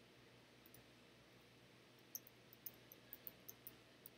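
Near silence, then a quick run of about eight faint computer keyboard clicks, typing a web address into a browser's address bar, starting about two seconds in.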